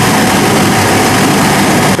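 Olive mill machinery, Pieralisi decanter centrifuges, running: a loud, steady mechanical noise with a low hum. It cuts off at the end.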